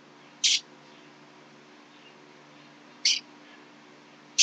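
A man's breathing in the pause between sentences: two short, hissy breaths about two and a half seconds apart, over a faint steady electrical hum.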